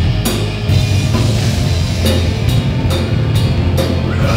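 Live rock band playing an instrumental passage: electric guitars and a drum kit with heavy low end and regularly repeated cymbal hits.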